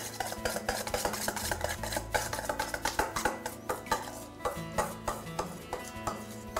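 A utensil scraping and clinking against a stainless steel mixing bowl as a thick whipped mixture is emptied out of it into a glass dish, many short clinks and scrapes. Music plays underneath.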